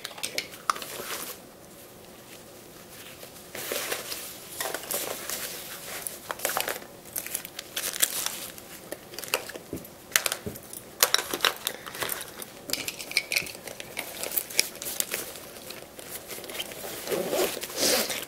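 Hands packing small toiletry items back into a fabric train case: plastic pouches and wrappers crinkling and rustling, with scattered light clicks and knocks of small bottles and containers being set in. There is a brief lull about two seconds in.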